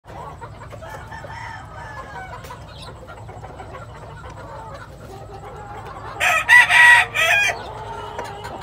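Gamefowl roosters calling faintly for the first six seconds, then a loud rooster crow about six seconds in, broken into a few parts and lasting about a second and a half.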